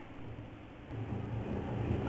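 Low steady background rumble with a faint hiss, in a gap between spoken phrases.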